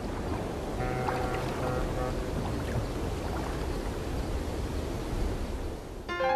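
Steady rushing sea-like ambience of surf and wind, with a few faint held musical notes about a second in, before the song begins.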